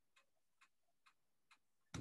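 Near silence: room tone with faint, regular ticks a little over twice a second.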